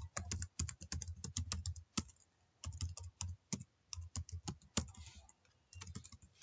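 Typing on a computer keyboard: quick runs of key clicks broken by short pauses.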